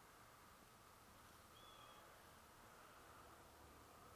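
Near silence: faint steady background hiss, with one brief faint high whistle about one and a half seconds in.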